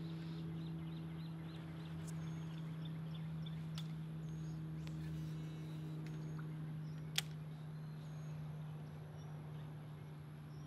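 Outdoor background sound: a steady low hum runs throughout, with faint, short high bird chirps now and then and one sharp click about seven seconds in.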